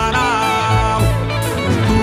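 String orchestra (violins, violas and cello) with guitar playing an MPB song arrangement between verses. A male voice holds and lets fall the last sung word of a line at the very start.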